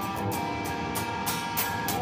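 PRS electric guitar being strummed: sharp pick strokes several times a second over ringing chords.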